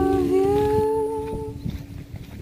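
Background music: voices holding a long hummed chord from a pop song, fading out about a second and a half in.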